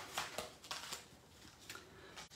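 Faint crinkling and a few short clicks of clear plastic die packaging being handled, mostly in the first second.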